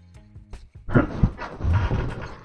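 A man sighing in exasperation, a breathy sound starting about a second in, over background music.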